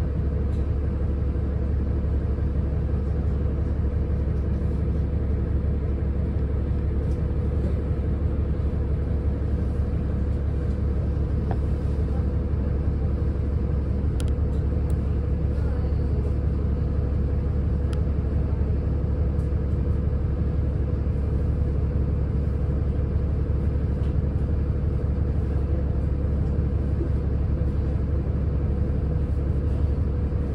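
City bus standing with its engine idling: a steady low rumble with a constant hum, heard inside the passenger cabin.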